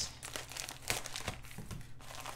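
A plastic padded mailer envelope crinkling as it is handled, with a few light taps.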